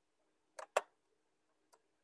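Computer mouse clicking: a quick pair of clicks about half a second in, a louder click just after, and a faint click near the end.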